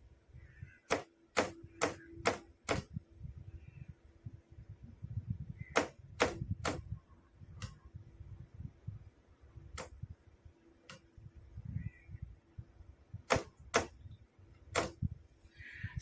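Sharp clicks of a hand-operated Morse key switching a signal lamp on and off, in irregular groups of two to five clicks with pauses between, as Morse characters are sent by light.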